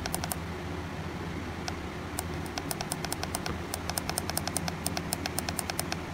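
Repeated clicks from the arrow button on a Bushnell Trophy Cam HD Aggressor trail camera's keypad, pressed over and over to step the interval setting up. The clicks come in runs of several a second, with a short pause after the first few, over a steady low hum.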